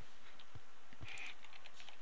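Computer keyboard being typed on: a handful of separate keystrokes at an uneven pace, over a steady low background hiss.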